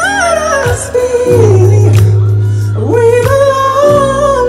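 Man singing soul-style in a high mixed voice over an instrumental backing track. His voice steps down in a run, holds a note, then slides back up near the end, over a long held bass note.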